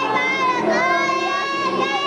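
Young children singing a Christmas song, with one long high note held for most of the two seconds.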